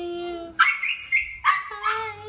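A dog yipping excitedly: four short, high yelps in quick succession in the second half, after a steady held whine.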